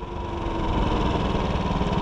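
Motorcycle engine running while riding, a steady fast low pulse that grows a little louder over the first half second and then holds even.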